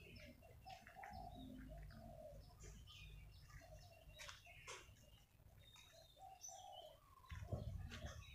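Faint outdoor birdsong: repeated low cooing calls, like a dove's, with short high chirps from small birds scattered through.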